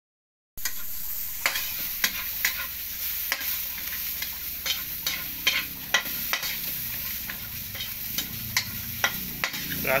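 A metal spatula scraping and clattering against a wok as vegetables are stir-fried, over a steady sizzle of frying. The sizzle begins about half a second in, and the spatula strokes come irregularly, about one or two a second.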